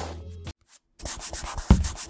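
Music ends about half a second in; after a brief silence comes a quick run of rough scrubbing strokes of a paintbrush on paper, with one loud thump near the end.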